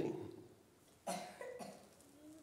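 A person's short cough about a second in.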